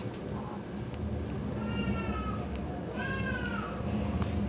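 Two short high-pitched calls, like meows, each sliding down in pitch at its end: the first about a second and a half in, the second near the end. A steady low hum runs beneath them.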